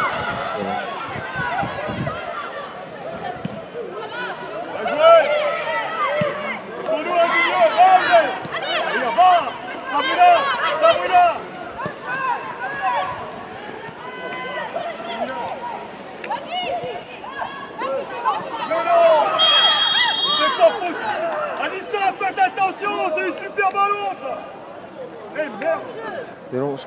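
Voices talking and calling out on and around a football pitch during a match. A brief, high, steady whistle tone sounds about three-quarters of the way through.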